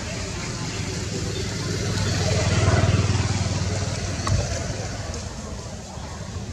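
A motor vehicle passing by: engine rumble and road noise swell to a peak about halfway through and fade away again, with people's voices in the background.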